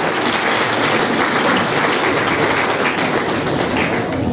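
Audience applauding, a dense steady clapping that eases off near the end.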